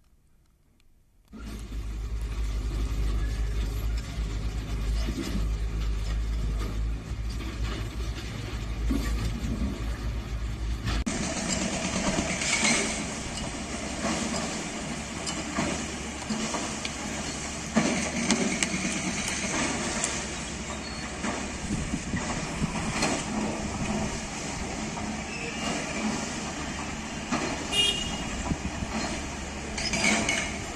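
Hydraulic excavators demolishing a concrete building. After a moment of silence, diesel engines run with a steady low rumble. About eleven seconds in this gives way to clatter and knocks of breaking concrete and falling debris over the running machines.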